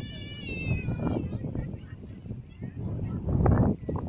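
A high, drawn-out animal call at the start, falling slightly in pitch over about a second. Under it, a low rumble of wind buffeting the microphone, loudest about three and a half seconds in.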